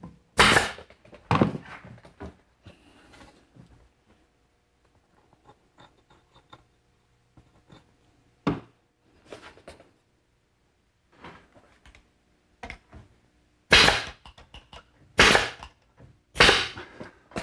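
Pneumatic brad nailer firing into plywood strips: about five sharp shots, spread out with pauses between them, and quieter knocks of wood being handled in between.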